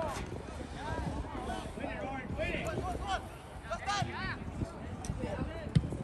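Shouting voices of players and onlookers across a soccer pitch in short calls, over open-air background noise. A single sharp thump comes near the end.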